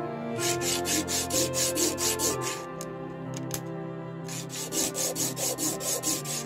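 A small sterling silver ring rubbed back and forth under a fingertip on flat sandpaper, flat-sanding its face: quick, even scraping strokes about five a second, in two runs with a pause of about two seconds between them.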